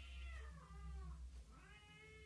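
A cat meowing faintly in the background, two long drawn-out meows, each rising and then falling in pitch.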